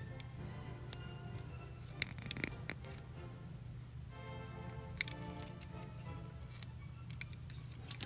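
Soft background music, with a few light clicks as fingers handle the clear plastic crystal puzzle.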